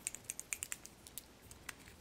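Light, rapid clicks and ticks of a small cobalt-blue glass dropper bottle and its plastic cap being handled and twisted open, thickest in the first second, with a couple of isolated clicks near the end.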